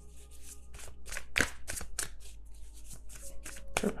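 A tarot deck shuffled by hand: a quick, uneven run of soft card slaps and riffles as the cards are mixed to draw another card.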